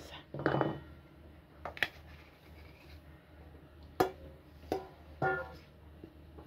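Hand knocking a metal mesh flour sieve over a glass bowl: a few scattered sharp taps, and near the end a couple of short ringing tones from the metal.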